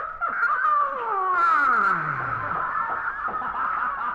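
A long vocal sound sliding steadily down in pitch from high to very low over about two seconds, over a steady high-pitched tone.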